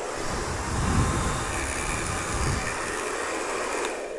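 Hand-held hair dryer running, a steady rush of air with a faint motor whine, switched on at the start. Its rear filter screen is removed, so the uncovered air intake sucks in a mannequin's long hair.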